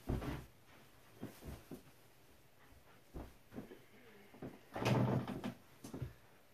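Arms slapping and bodies knocking together as a looping punch is caught and blocked in a hand-to-hand drill: a sharp knock right at the start, then a few lighter knocks and shuffles of feet and clothing, and a louder muffled stretch of movement about five seconds in.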